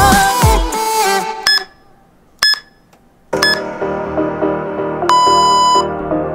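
Workout interval-timer beeps over background music: a pop song stops about a second and a half in, three short beeps about a second apart count down, a new electronic track begins, and a longer beep near the end marks the start of the exercise.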